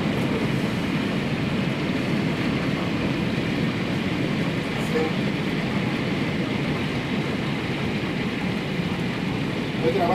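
Heavy rain mixed with hail pouring down steadily, an even, unbroken hiss.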